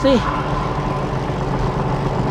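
Steady wind and tyre noise from a road bike rolling at about 17 mph on a concrete road surface, heard through a bike-mounted action camera.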